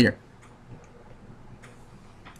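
A man's voice trails off, then quiet room tone with a faint single click about three quarters of a second in.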